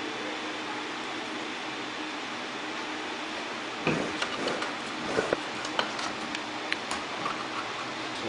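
Steady background hiss, then from about four seconds in, scattered light clicks and knocks as hands handle power cables and plastic connectors on an open-frame mining rig.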